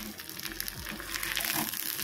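Chopped shallots frying in hot oil in a steel kadai: a steady sizzle with fine crackling.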